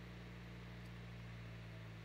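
Faint, steady hum of a Renault four-cylinder turbodiesel held at about 1,700 rpm, in the 1,500 to 2,000 rpm range where the revs are difficult to hold steady, a fault under investigation.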